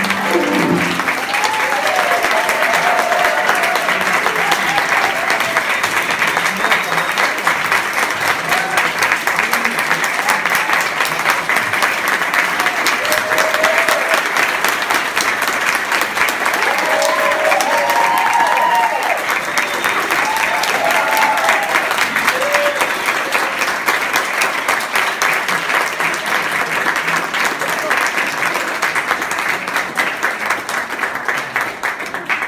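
A room full of people applauding steadily, with scattered cheering voices rising and falling over the clapping. The clapping thins a little near the end.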